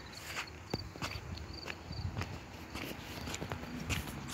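Footsteps on pavement: a run of light, irregular scuffs and ticks, with crickets chirping faintly in the background.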